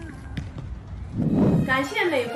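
Outdoor ambience with a low wind rumble, faint distant voices and a few scattered knocks. A short whoosh comes near the end, and then a woman's voice begins over music.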